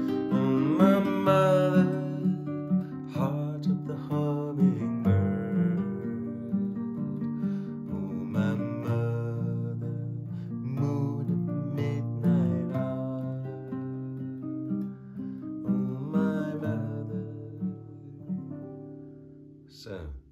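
A man singing slow, drawn-out phrases over a strummed acoustic guitar. The strumming thins out and fades over the last few seconds, leaving the chord ringing.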